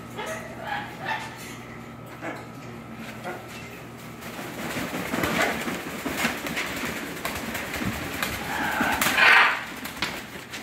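Young blue-and-gold macaw flapping its wings hard, a rapid rustling flutter that starts about halfway through and grows louder. There is one loud burst near the end.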